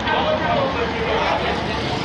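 Indistinct voices talking over steady outdoor street noise.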